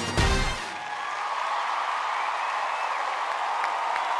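The dance music ends on a loud final hit about half a second in, followed by a studio audience applauding and cheering steadily.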